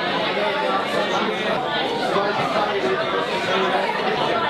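Crowd chatter: many people talking at once in a room, a steady din of overlapping conversations with no single voice standing out.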